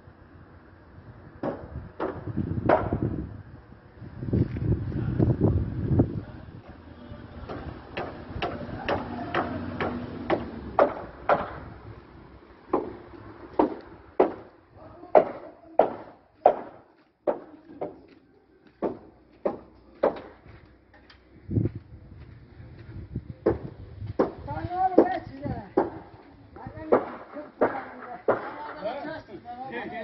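Construction-site knocking: a long run of sharp blows, about one a second, strongest in the middle of the stretch, with men talking near the end.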